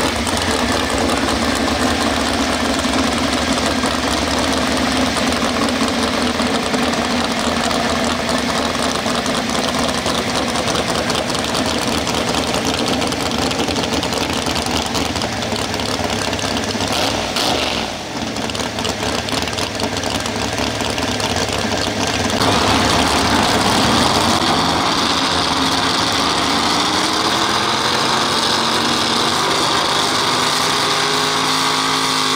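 Pro stock 4x4 pulling truck's engine running steadily at idle. Over the last several seconds it grows louder and climbs in pitch as the truck revs up to pull the sled.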